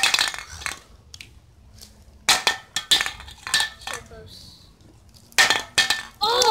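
A metal aerosol spray can clattering onto concrete as it is flipped and falls over. Sharp clanks with a short metallic ring come in three bunches: at the start, through the middle, and near the end.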